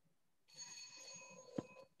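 Faint electronic ringing tone, several steady pitches sounding together, starting about half a second in and lasting about a second and a half. A short click comes just before the tone stops.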